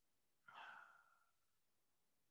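Near silence, broken about half a second in by a man's short, faint sigh as he breathes out. The sigh fades away within about a second.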